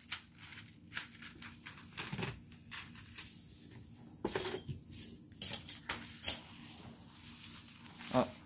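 Hands pressing, smoothing and shifting a plastic-covered diamond painting canvas and a ruler on a table: scattered rustles and crinkles of the plastic film with light taps, a few louder ones about halfway through.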